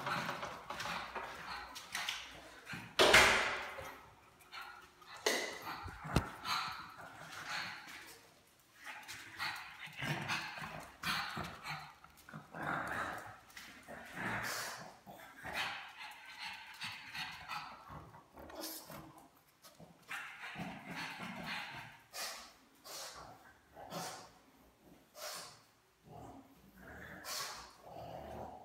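Pug barking and yapping at irregular intervals, the loudest bark about three seconds in.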